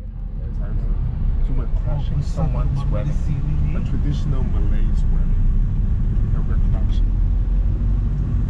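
Steady road and engine rumble inside a moving passenger van's cabin, with men's voices talking over it.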